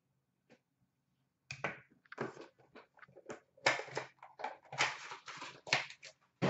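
Hands handling trading-card packaging and cases. After about a second and a half of near silence comes an irregular run of rustles, crinkles and small clicks.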